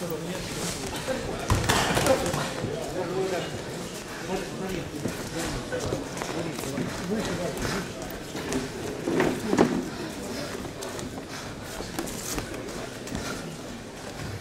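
Untranscribed voices of spectators and coaches shouting in a large, echoing sports hall during a boxing bout, with louder shouts about one and a half seconds in and again near nine and a half seconds.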